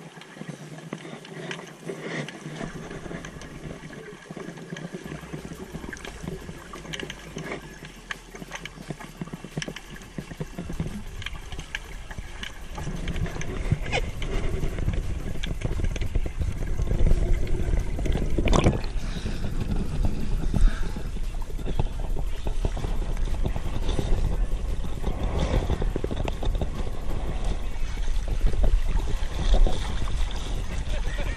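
Underwater sound muffled by a GoPro's waterproof housing: dull water noise with scattered clicks, getting louder about halfway through with rushing water and bubbles as a diver is brought up from the bottom. There is one sharp knock.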